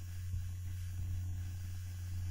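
Steady low electrical hum, unchanging, with nothing else over it.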